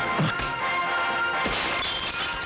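Film fight punch sound effects over background music: two hard hits, one just after the start and one about a second and a half in.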